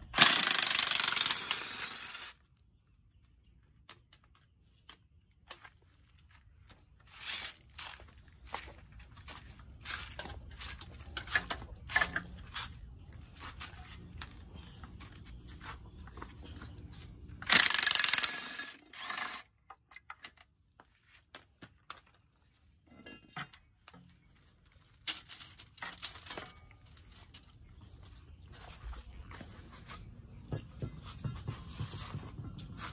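A power tool runs in two loud bursts of about two seconds each, at the start and a little past halfway, with a weaker run near the end. In between, metal tools click and clink in many short knocks.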